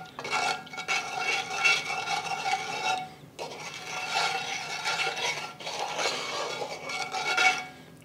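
A utensil stirring a soy-sauce-and-sugar sauce, scraping steadily around the bottom of the pan with a faint metallic ring, briefly pausing about three seconds in. The scrape at the bottom is how the cook tells whether the sugar has dissolved yet.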